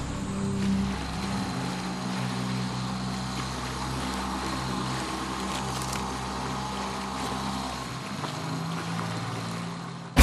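Soft background music: sustained low notes that shift in pitch every second or so over a steady wash of sound, with no beat.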